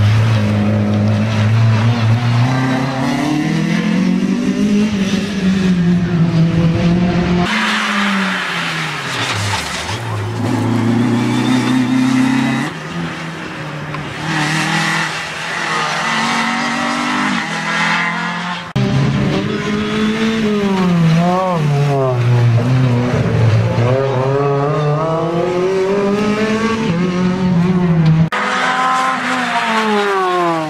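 Renault Clio race cars' engines revving hard through a slalom, the pitch climbing and dropping over and over as the drivers accelerate and lift between cones. Several runs are cut together.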